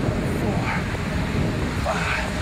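Steady low noise, with two short high-pitched yelps over it: one under a second in and one near the end.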